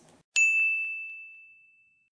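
A single bell-like ding: struck suddenly about a third of a second in, one clear high tone that fades away over more than a second.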